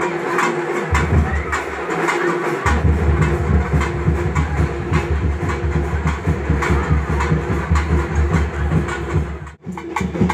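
Festival drumming: fast, regular beats with a broken held tone over them and a heavy low rumble underneath.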